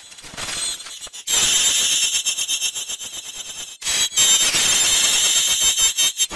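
Harsh, digitally distorted logo audio turned into a shrill, high-pitched electronic screech with steady piercing tones. It is faint at first and turns loud about a second in. It breaks off briefly just before the fourth second, then comes back as loud.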